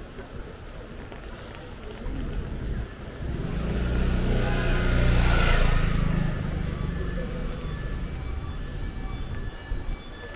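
A motor vehicle passes close by on the rain-wet street: its engine and the hiss of its tyres on the wet pavement swell up about three seconds in, peak about halfway through, then fade away.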